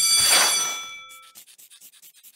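Cartoon sound effects: a swishing burst with bright, bell-like ringing tones that fade within about a second, then a fast run of faint scratchy strokes, a pencil-writing effect.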